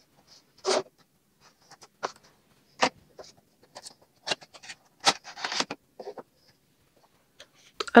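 A cardboard toy box with a clear plastic window being opened by hand: a string of short scrapes, taps and rustles of cardboard and plastic packaging as the box is opened and the inner tray is slid out.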